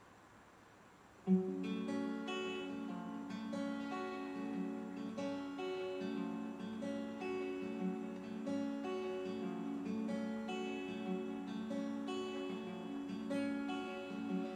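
Acoustic guitar starting a song's instrumental intro about a second in, after a near-silent pause, then playing a steady run of chords and notes.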